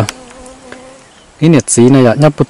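A flying insect's faint, steady buzz during a pause in talk, before a man's voice resumes about one and a half seconds in.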